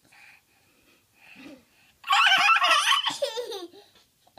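A toddler laughing: a few small faint sounds at first, then a loud burst of giggling about halfway in that lasts more than a second.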